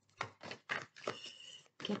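A deck of oracle cards shuffled by hand: a few sharp card slaps in the first second, then a rustle of cards sliding against each other that stops near the end.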